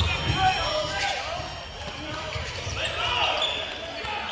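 Live basketball court sound in a gym: a basketball bouncing on the hardwood floor, with scattered voices in the background.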